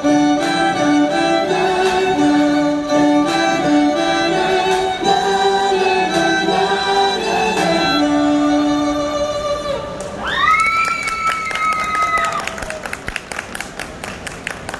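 Violin playing a melody over an accompaniment, ending about ten seconds in. A high note rises and holds for about two seconds after that, and a scatter of short sharp claps follows as the music stops.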